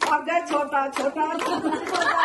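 A group of women clapping their hands in a steady rhythm, with women's voices over the claps.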